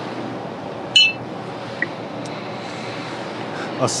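Steady background hiss with one short, bright high-pitched ping about a second in. A man's voice starts a greeting at the very end.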